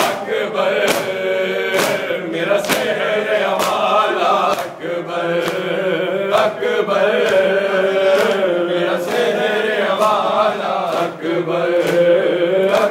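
Men chanting a Muharram noha in unison, with rhythmic hand slaps on bare chests (matam) landing about once a second in time with the chant.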